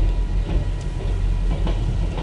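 VIA Rail passenger coaches rolling past at a crossing: a steady low rumble with a few faint clicks. Heard from inside a car's cabin.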